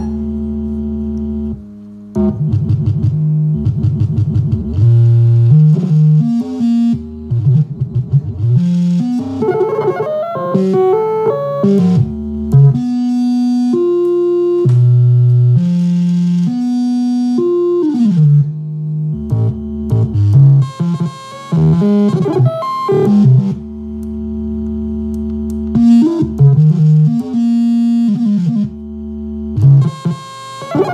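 Small handheld glitch synthesizer playing electronic tones that jump from pitch to pitch. Short stepped notes alternate with tones held for a second or two and with stretches of rapid glitchy stutter, and there is a downward pitch slide about eighteen seconds in.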